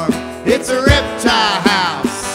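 Gibson J-200 acoustic guitar strummed in a country-style groove, with low cajon thumps on the beat and a voice singing over it.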